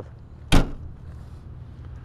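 The flip-up rear liftgate glass of a 2008 Mercury Mariner being shut: one sharp slam about half a second in as it latches.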